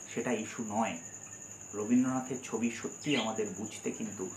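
A cricket's steady high-pitched chirring runs behind a man's voice talking in Bengali.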